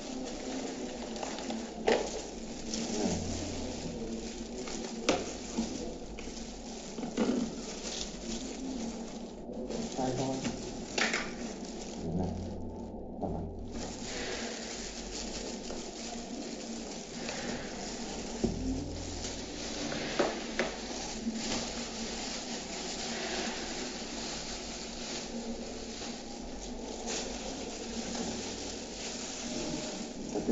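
Thin disposable plastic gloves crinkling as hands handle a plastic toner bottle, over a steady hiss, with a few sharp knocks of plastic scattered through.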